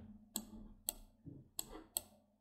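A few faint, sharp clicks at uneven intervals from a computer mouse, heard as a chart is dragged along by its scrollbar, over a faint steady hum.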